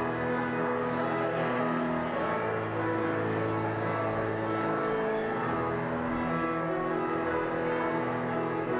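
Instrumental music: slow, held chords that change every second or two.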